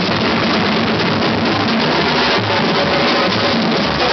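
Batucada samba percussion ensemble playing: big surdo bass drums keep a steady low beat under a dense, continuous rattle of snares and shakers.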